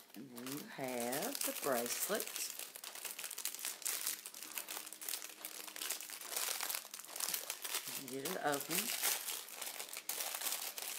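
Plastic jewellery packaging crinkling and rustling steadily as pieces are handled, with a woman's brief wordless voice near the start and again about eight seconds in.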